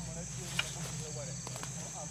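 Forest ambience: a steady high insect buzz over a low steady hum, with scattered short chirping calls and a sharp click about half a second in.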